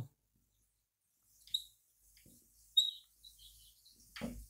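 Marker pen writing on a whiteboard: a few short squeaks, one about a second and a half in and another near three seconds in.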